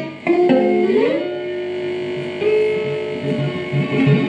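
Red Stratocaster-style electric guitar playing a slow blues lead line. About a second in a string bend slides the pitch up, the note is held, it steps to another held note, and shorter low notes follow near the end.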